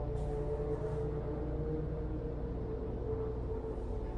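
Dark, ambient horror-style music: a steady low drone with a sustained held tone above it.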